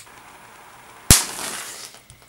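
Small rocket engine lit by a blue-flame torch ignites with one sharp bang about a second in, followed by a short hiss of burning propellant that dies away within a second. A faint steady hiss of the torch flame comes before the bang.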